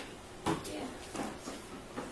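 A brief spoken "yeah" in a classroom, with a sharp knock about half a second in and faint voices after it.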